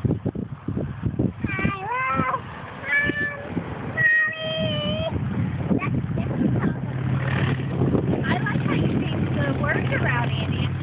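A young girl singing a made-up tune in a high voice, with long held and sliding notes. From about six seconds in, a steady low hum runs underneath.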